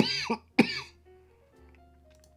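A man coughing twice in quick succession in the first second, a cough that a viewer puts down to his recovering from COVID. Soft background music with held notes goes on underneath.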